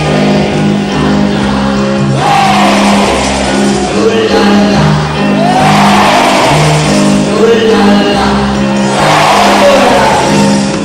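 Live band music from an amateur 1981 concert recording: a steady, repeating bass line under sustained chords, with a swooping sound roughly every three and a half seconds.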